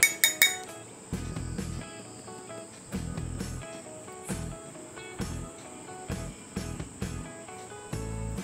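Background music, with a quick run of sharp metallic taps at the very start from a mesh flour sieve being tapped over a glass bowl as flour is sifted through it.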